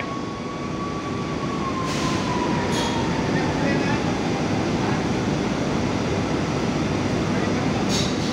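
Loud steady rumble of heavy industrial machinery, with a thin whine that drifts down in pitch over the first few seconds and a brief hiss about two seconds in.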